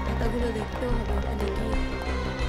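TV drama background music: a steady low drone under a wavering melodic line.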